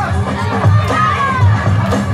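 Hip-hop music for breakdancing over a sound system, its bass beat about two and a half beats a second, with children in the crowd shouting and cheering over it.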